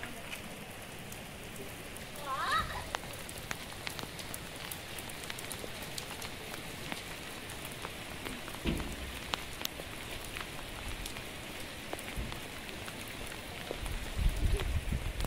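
Steady heavy rain falling on a wet paved road: a constant hiss with many sharp ticks of single drops striking close by. A low thump sounds about nine seconds in.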